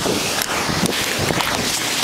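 Steady wind noise buffeting the microphone as the rider is pulled off the beach and up into the air on a parasail.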